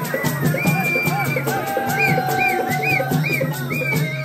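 Dhol drum played live in a fast, steady beat, with a high melody of short, repeating gliding notes over it and one long held note in the middle.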